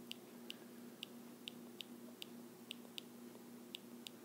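Faint, light clicks of a stylus tapping on a tablet screen while handwriting, about three a second and unevenly spaced, over a faint steady electrical hum.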